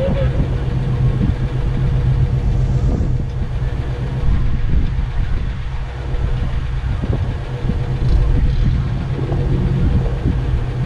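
Vintage Willys wagon's engine idling with a steady low rumble, with a few faint knocks.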